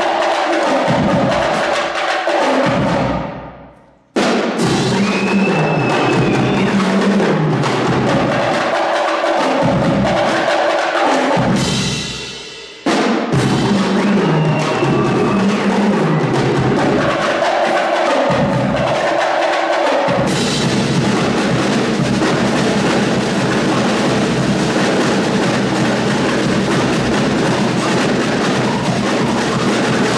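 Snare drums and a bass drum playing a percussion piece in a steady beat. The sound dies away and comes back in suddenly twice, about four and about thirteen seconds in, and from about twenty seconds the drumming turns into a dense, continuous rattle.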